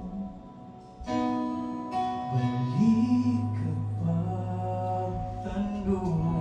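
A Cebuano gospel song performed live: a man singing into a microphone over keyboard and guitar accompaniment, the music filling out about a second in.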